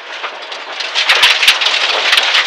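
Inside a Dodge Neon SRT4 rally car driven hard on gravel: its turbocharged four-cylinder engine and gravel road noise, growing louder about a second in, with sharp cracks through the second half.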